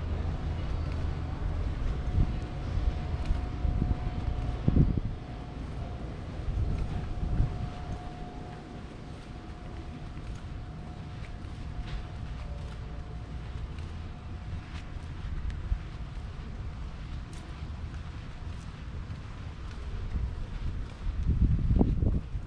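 Wind buffeting the microphone as a low rumble, strongest in the first five seconds and easing after, with a faint steady hum through the middle and a few small clicks.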